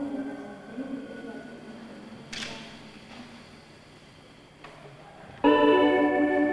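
Electronic organ music: sustained chords start abruptly near the end and are held steady. Before that there are fading pitched sounds and a couple of faint clicks.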